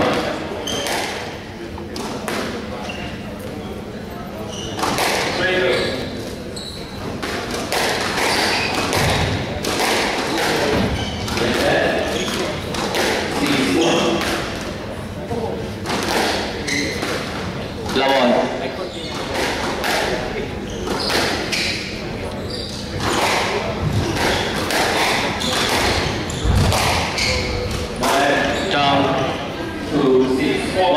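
Squash rally: repeated sharp hits of the ball against rackets and the walls, with the players' footwork on the court floor, ringing in a large hall, over a murmur of voices.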